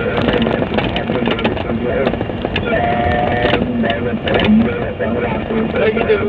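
Steady wind and road noise from a vehicle moving along a highway, buffeting the microphone, with indistinct talking mixed in.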